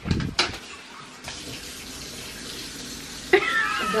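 Kitchen tap running into a sink in a steady rush as dishes are washed, after a few short knocks right at the start.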